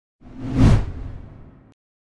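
A whoosh sound effect with a deep boom under it, swelling to a peak a little over half a second in and then fading away, as used for a closing logo transition.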